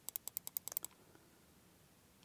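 Rapid, even clicks at a computer, about ten a second, as a setting is stepped lower; they stop just under a second in, leaving quiet room tone.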